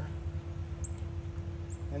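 Steady low background hum with a faint steady tone, and a couple of faint, short high chirps.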